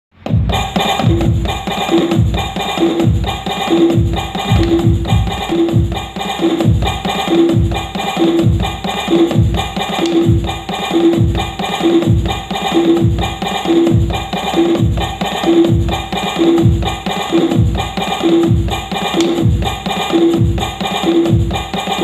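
Roland SPD-20 digital percussion pad played with drumsticks, its electronic drum sounds in a steady repeating groove. A deep kick-like hit comes about twice a second, with a pitched, block-like hit about once a second.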